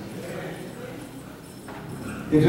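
A pause in a man's speech over a microphone, leaving faint, steady room noise.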